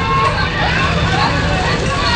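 Indistinct voices talking over a steady low rumble.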